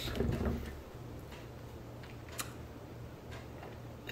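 Quiet room tone with a steady low hum, a soft rustle near the start and a few faint clicks, the clearest about two and a half seconds in.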